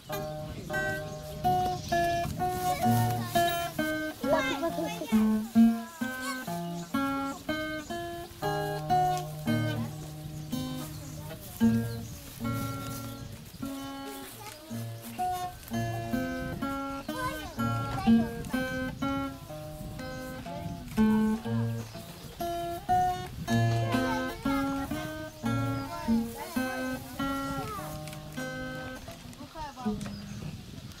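Acoustic guitar picked note by note: a simple melody over bass notes.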